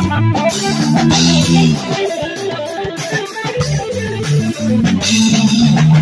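Live rock instrumental: amplified electric guitar playing sustained melodic notes over a drum kit with cymbal hits.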